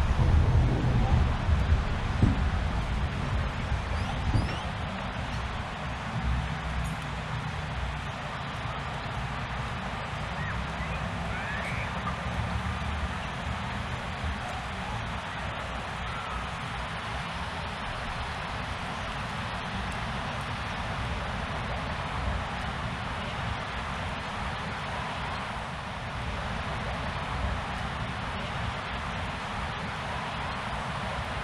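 Steady outdoor wind-like ambience with a low rumble and rustling, a little louder in the first few seconds, with a few faint short high chirps in the middle.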